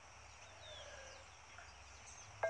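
Near silence: faint outdoor ambience with a few faint, short bird chirps.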